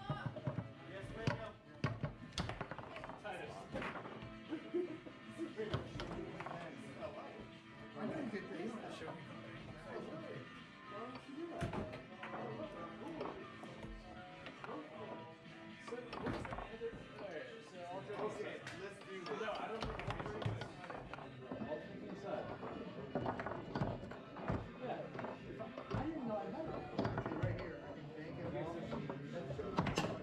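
Foosball game in play: repeated sharp knocks of the ball striking the plastic men and the table walls, scattered irregularly throughout. Music and voices run underneath.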